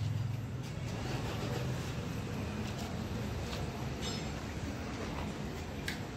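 Small motorcycle petrol engine mounted on a test frame, running steadily.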